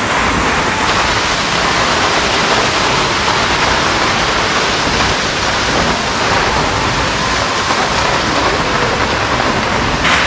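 Hardraw Force, a single-drop waterfall of about 100 feet, falling into its plunge pool: a steady, loud rush of water.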